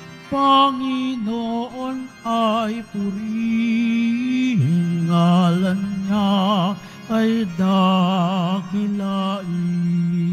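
A single voice singing a slow hymn, holding long notes with a strong vibrato, in short phrases with brief breaks between them.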